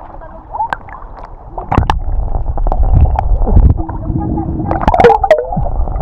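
Sea water sloshing and splashing close against a waterproof camera held at the surface, with gurgling and a deep muffled rumble as it dips under. The water noise grows louder from about two seconds in.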